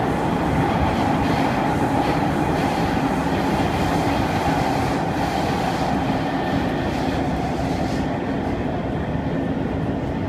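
Kawasaki C151 MRT train running, heard from inside the passenger car: a steady rumble of wheels on track with low, steady hum tones underneath. Near the end the high hiss eases off slightly.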